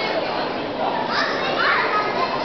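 Many visitors talking in a large, reverberant hall, with children's high voices calling out from about a second in.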